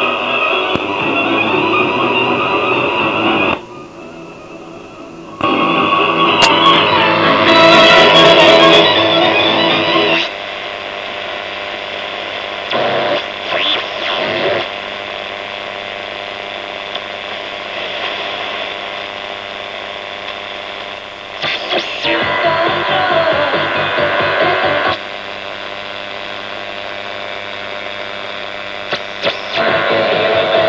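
1949 Radio Kosmaj 49-11 valve radio (ECH21, ECH21, EBL21, AZ1 tubes) being tuned by hand across the AM bands: snatches of broadcast music come and go through its loudspeaker. Between stations a steady low hum and hiss is left.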